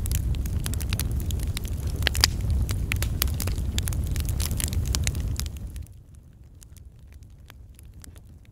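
Intro sound effect of fire: flames burning with a steady low rumble and many sharp crackles. About six seconds in it drops away sharply, leaving faint scattered crackles.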